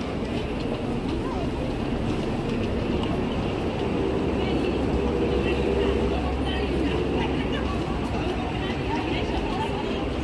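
Busy city street: a steady rumble of traffic with double-decker bus engines, heaviest about halfway through, under the chatter of passers-by.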